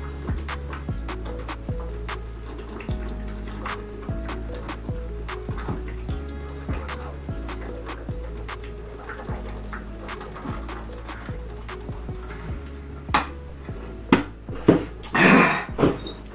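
Background music with a steady beat over faint gulping as soda is chugged from a 2-liter bottle. In the last few seconds, several loud short vocal bursts come as the drinking stops.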